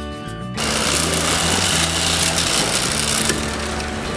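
Guitar music cuts off about half a second in. A boat's motor then runs steadily under a loud hiss, and the hiss eases a little near the end.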